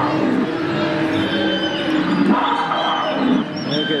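Exhibition hall background of crowd voices mixed with dinosaur growls and roars played from the animatronic displays.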